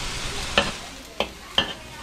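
Amaranth greens sizzling and simmering in a little water in a wok, the sizzle dying down. A metal spatula stirs them, with three sharp clicks of the spatula against the wok.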